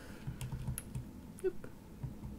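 Buttons of a TI-84 Plus Silver Edition graphing calculator being pressed: a few soft, scattered key clicks.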